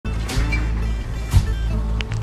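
Film soundtrack music with a low, steady bass line and a few sharp percussive hits, the loudest a little past halfway.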